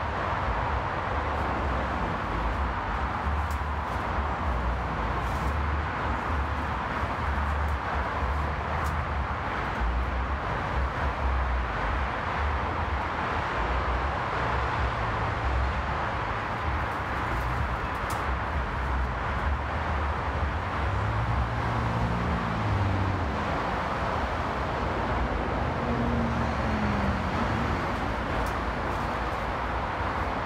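Steady highway traffic noise: a continuous rush of passing cars and trucks with a low rumble underneath.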